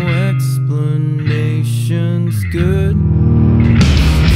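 Alternative rock song: a sung vocal line over guitar and sustained low notes, then the full band comes in loudly near the end with a wash of cymbals.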